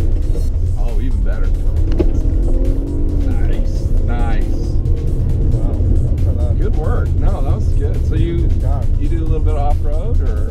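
Steady low engine and road rumble inside the cabin of a 2019 Acura RDX with a 2.0-litre turbocharged four-cylinder, driven hard on a gravel course, heard under background music and voices.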